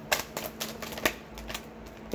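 Tarot cards being shuffled and handled: a run of irregular sharp clicks and snaps, loudest just after the start and again about a second in.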